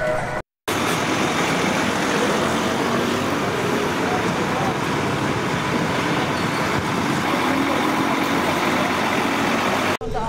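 Busy street ambience: a steady wash of traffic noise with voices mixed in. The sound drops out completely for a moment just under a second in, then runs on unchanged.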